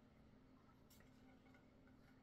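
Near silence: room tone with a faint low hum and a faint click about a second in.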